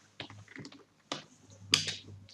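Computer keyboard keys being typed: a few separate keystrokes, unevenly spaced, as a short word is typed.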